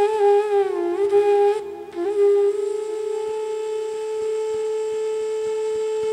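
Bansuri (side-blown bamboo flute) playing slowly in raga Lalit: quick gliding ornaments around a few notes for the first two seconds, then one long held note.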